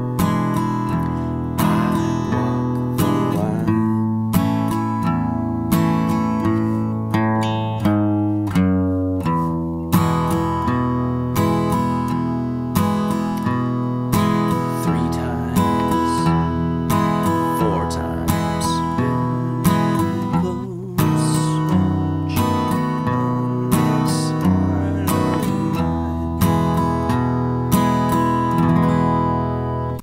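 Acoustic guitar strummed at a slow, steady tempo, a bass note followed by down-up strums, moving from E7 and A chords through a transition onto E and then into B7.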